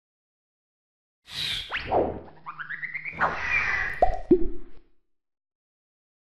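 Animated logo sting made of cartoon sound effects, starting about a second in: a whoosh, sliding tones that fall and then rise, and two quick downward-dropping blips near the end.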